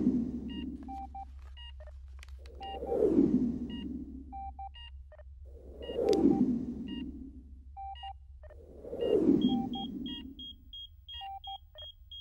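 Patient-monitor beeps at two pitches over a steady low hum, with a swelling low whoosh that falls in pitch about every three seconds. Near the end the beeps turn into a fast, even run of high beeps, about three a second.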